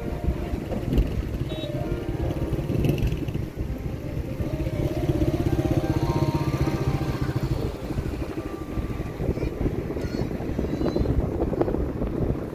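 A motor vehicle engine running close by with a steady low throb, while music plays over it.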